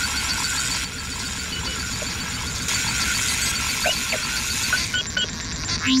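Synthetic robot sound effects: a steady mechanical whirring hiss under a rapid, even electronic ticking, with a few short chirps near the middle and end.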